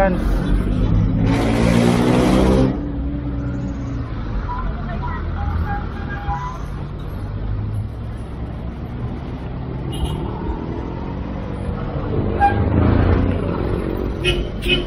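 City road traffic heard from a moving bicycle: engines of cars and other vehicles running alongside over a steady low rumble of wind and tyres. A louder vehicle passes close by a second or two in, and another engine rises near the end.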